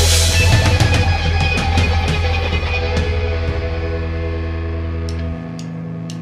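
A rock recording with electric guitar and drum kit. The playing thins out to held, ringing notes, and the bass drops away about five seconds in.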